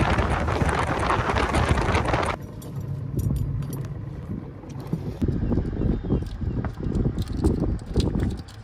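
Wind rushing over the microphone on a boat, loud for the first two seconds or so and then cutting off. After that, water slaps against the hull in irregular knocks, with a lower wind noise under it.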